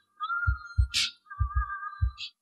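Electronic intro sound effect: a run of low thumps, roughly in pairs, under a steady, slightly wavering high tone, with a short hiss burst about a second in.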